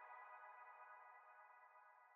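Faint tail of a TV channel's electronic logo jingle: a held synthesizer chord fading out.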